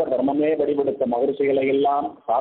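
Speech only: a man's voice talking steadily in a discourse, through a narrow-band recording.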